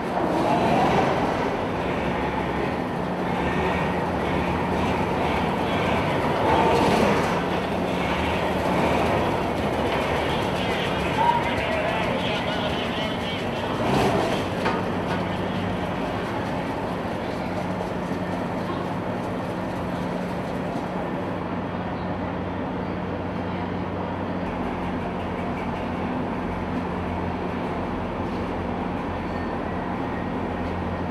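AAV-7A1 amphibious assault vehicle's diesel engine running and its steel tracks clattering as it drives past. A steady low hum runs throughout, with a few louder swells and a sharp knock in the first half.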